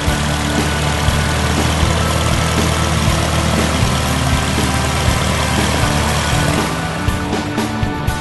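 A small single-engine propeller plane's engine running as it taxis past, under background music; the engine noise drops away about seven seconds in, leaving the music.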